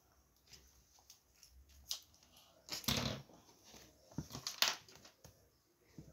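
Paper being handled and rustled, with a few short crinkles and light clicks spread through, the loudest about three seconds in.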